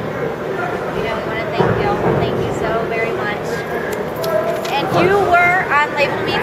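People talking, with no words clear enough to pick out, over a steady background din.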